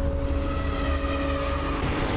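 Cinematic intro sound effect: a loud, steady rumbling whoosh with a few held drone tones under it.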